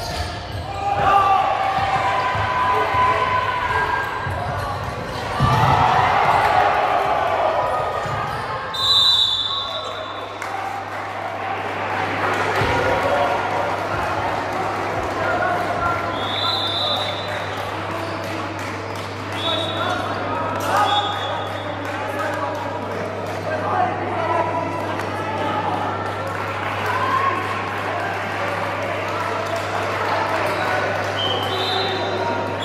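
Basketball game in a large, echoing sports hall: the ball bouncing on the hardwood court while players and spectators call out. Several short high-pitched chirps come through, the first about nine seconds in, and a steady low hum sets in at about the same point.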